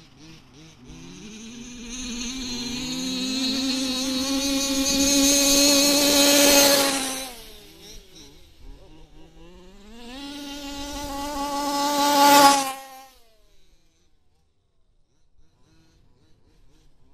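Small two-stroke petrol engine of a 1/5-scale radio-controlled 4WD car, revving high with a buzzing note. Its pitch and loudness climb for several seconds, then fall away. It climbs again and cuts off abruptly.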